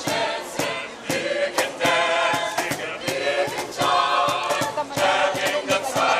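A choir of many voices singing together over a sharp, rhythmic beat of about three strokes a second.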